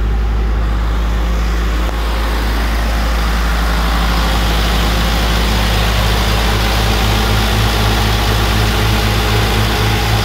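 Diesel engine of an Airman portable air compressor running at a steady speed, with its throttle raised so that it no longer drops into a low engine RPM fault. A continuous low hum with a light even throb, sounding nearer and brighter from about two seconds in.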